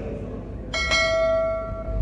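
A bell struck once, about three-quarters of a second in, its ringing tone holding for just over a second before fading.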